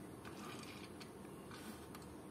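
Quiet room tone with a few faint, soft clicks from small plastic toy cars being handled and turned in the hands.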